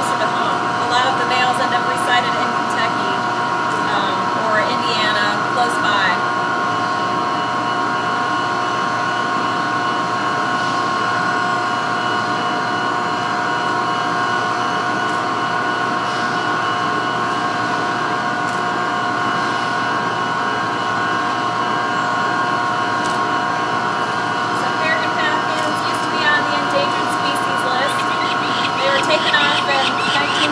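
Steady hum of power-plant machinery: a constant drone made of several tones that hold one pitch, with no change in speed.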